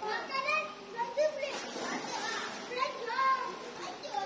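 Children shouting and calling out to each other while playing, in short high-pitched bursts of voice.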